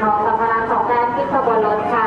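Only speech: raised voices talking without pause.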